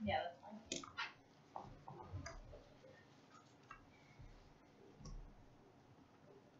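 Faint, irregular clicks and taps of papers and small objects being handled at a meeting table, most of them in the first two and a half seconds and then only a few, after a brief spoken "yeah" at the start.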